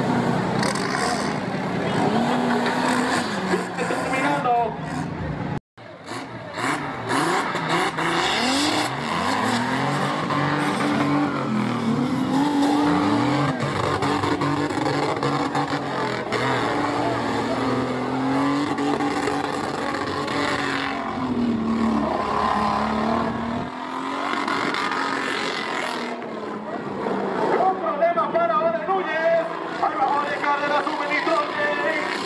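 Off-road 4x4 engine revving hard as it pushes through deep mud, its pitch rising and falling again and again, with spectators' voices underneath. The sound cuts out for an instant about six seconds in.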